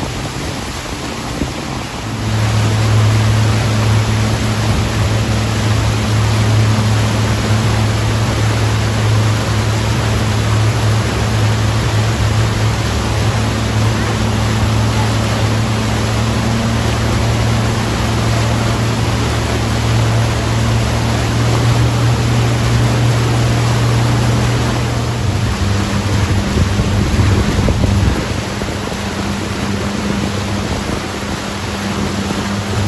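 Motorboat engine running at a steady, loud drone under load while towing a tube, over the rush of wind and churning wake water. The engine gets louder about two seconds in and eases off near the end.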